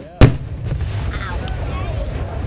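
Aerial firework shell bursting with one sharp, loud boom a fraction of a second in, the report dying away quickly.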